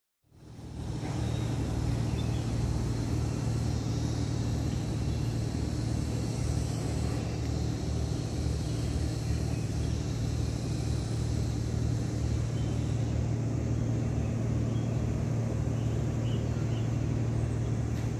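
Steady low rumble of outdoor city ambience that fades in over the first second, with a faint even hiss above it.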